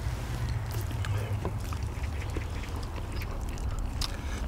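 Close-miked eating sounds: chewing and lip-smacking with small wet clicks as braised beef ribs are eaten by hand, over a steady low rumble.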